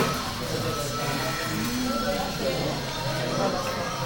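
Indistinct background chatter of several voices, with music playing underneath.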